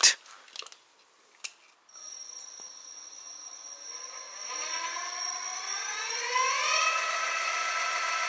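A few clicks, then an electric-bicycle planetary-geared hub motor (36 V, 500 W) spinning its wheel up with no load, fed 42 V: a whine that rises in pitch and grows louder over several seconds, then holds steady.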